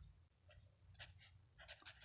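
Faint strokes of a pen writing on paper, a few short separate strokes.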